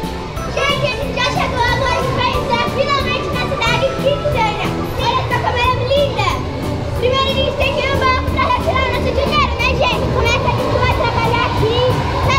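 Children's voices talking and chattering over background music with a steady beat.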